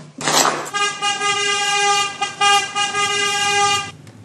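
A car horn held for about three seconds, one steady tone broken by a couple of very short gaps, after a brief rushing noise at the start.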